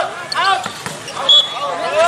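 A volleyball being struck and thudding on an outdoor court, a few sharp knocks. A short high tone comes about a second in, with a man's voice calling the match over a PA.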